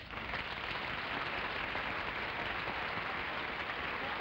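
Studio audience applauding, a steady, even clapping.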